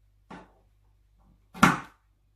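Scissors cutting twisted cord: a light snip, then a louder, sharp cut about a second and a half in.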